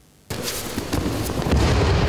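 Rough, crackling rustle and scuffing of judoka grappling on a training mat, their heavy jackets rubbing. It starts abruptly about a third of a second in.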